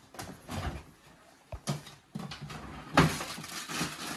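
A refrigerator door being opened while items inside are handled, making a series of irregular knocks, clunks and rustles. The loudest comes about three seconds in.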